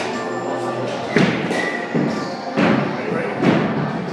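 Four dull thuds, one at a time about a second apart, over background music and voices.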